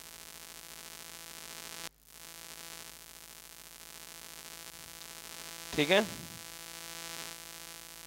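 Steady electrical hum made of many fixed tones with a light static hiss. It cuts out briefly about two seconds in, then carries on.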